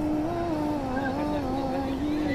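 A single voice chanting one long held note that wavers slowly up and down in pitch, without pause.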